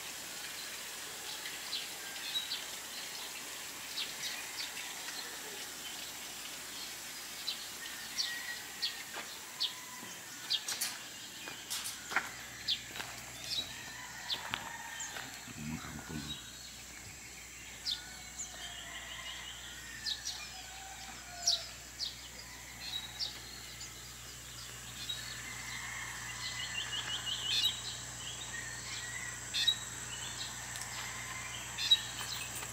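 Outdoor village ambience: small birds chirping and calling in short, scattered notes, with a fast trill near the end, over a steady high background hum. A brief low rumble about sixteen seconds in.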